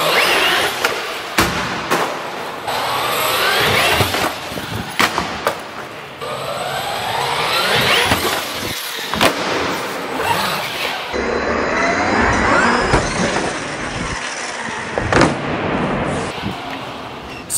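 Traxxas Hoss RC monster truck driving hard: its electric motor whine rises in pitch four times as the throttle is gunned. Several sharp knocks and clatters come in between, as the truck hits and lands on the ramps.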